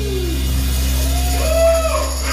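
Live band holding one sustained low note without drums: a pitch slides downward at the start, and a single arching held note sounds near the end.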